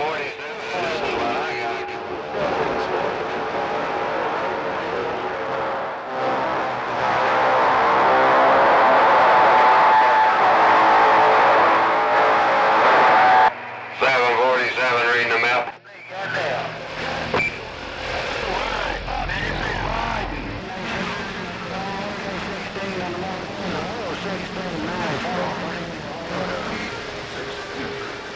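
Radio receiver audio on the 11-meter band around 27.285 MHz: distorted, hard-to-follow sideband voices of distant stations over static. A stretch of loud hiss in the middle cuts off suddenly, followed by short dropouts.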